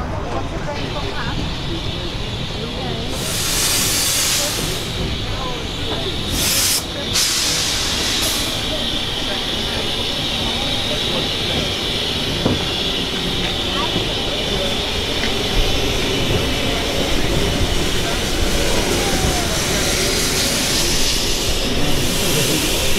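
Austerity 0-6-0 saddle tank steam locomotive running slowly past alongside the coaches during its run-round. Loud bursts of steam hiss come about three to five seconds in and again twice shortly after, over a steady background of hiss and rumble.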